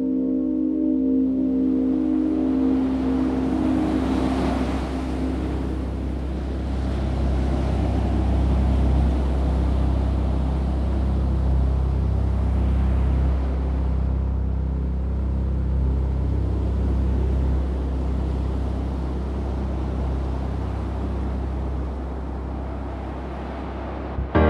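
Steady low rumble of a boat's engine with the hiss of water rushing past the hull, the hiss swelling about four seconds in.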